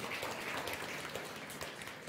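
Congregation applauding, a dense patter of many hands clapping that thins out near the end.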